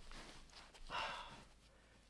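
Faint rustle of fingers pressing and rubbing on a running shoe's mesh upper, with one short breathy hiss about a second in.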